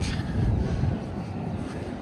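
Wind buffeting the microphone: a steady low rumbling noise with no distinct strikes.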